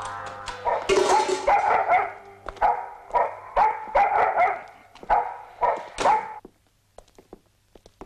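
A dog barking repeatedly, about a dozen short barks over five seconds, then stopping. Film music fades out at the start.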